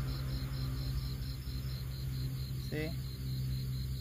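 Night insects chirping in a steady, evenly pulsed high-pitched trill, like crickets, over a steady low hum.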